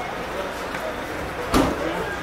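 Background chatter of a crowd in a busy lobby, with a single thump about one and a half seconds in.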